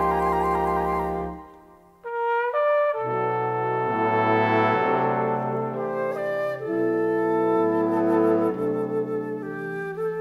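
Jazz orchestra horn section playing a slow ballad introduction. A held chord with vibrato fades away about a second and a half in, then the horns come back in with layered sustained chords that shift every second or so.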